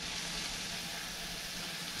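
Scallops searing in olive oil with onion and jalapeño in a frying pan, sizzling steadily.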